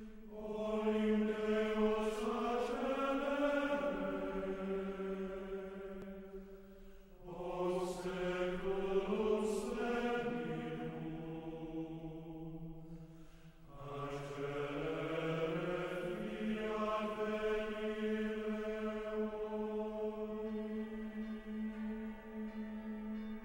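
Choir chanting slowly in long held notes, in three phrases with short pauses about seven and thirteen seconds in.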